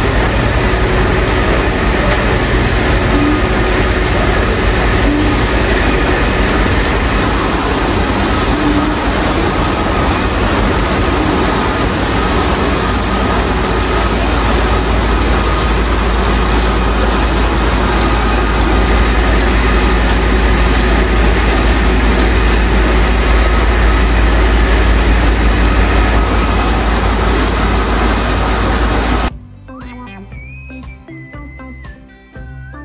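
Tea-processing machinery running steadily and loudly: a conveyor belt feeding leaf into a rotating stainless-steel drum. A constant low hum sits under the noise, with a few steady tones above it. The sound cuts off abruptly near the end.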